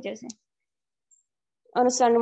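A man's voice speaking, trailing off just after the start and resuming near the end, with about a second and a half of silence in between.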